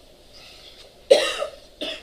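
A man coughs twice: a sharp cough about a second in and a shorter one near the end.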